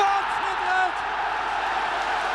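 Stadium crowd cheering a headed goal, heard through a 1972 television broadcast recording, with the commentator's voice briefly at the start.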